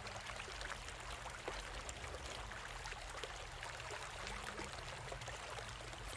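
Small waterfall trickling down a stone wall: a steady splash and patter of falling water, with a low rumble underneath.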